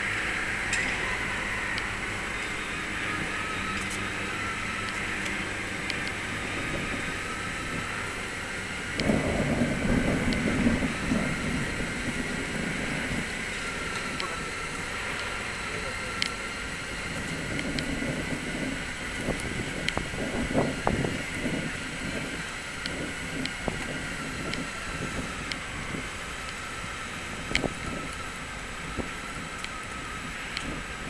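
Steady city traffic hum along an urban river walkway, with a low engine drone for about the first nine seconds. After that there is an irregular murmur of indistinct voices.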